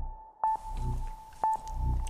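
Countdown sound effect played by the Arduino-controlled MP3 module through the machine's small built-in speakers: a short beep starting with a click, twice about a second apart. Between the beeps a low hum swells and fades in time with them.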